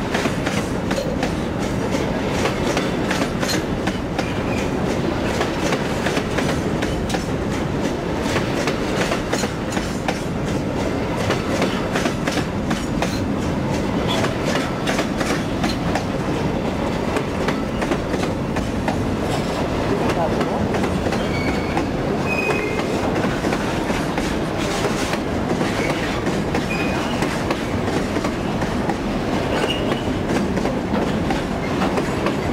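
Freight wagons of a long train rolling past close by: a steady rumbling rattle with rapid clickety-clack of wheels over the rail joints. A few brief high squeaks come in the last third.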